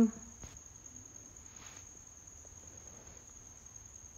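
Quiet room tone: a faint, steady high-pitched whine over a low hum, with no sewing machine heard running.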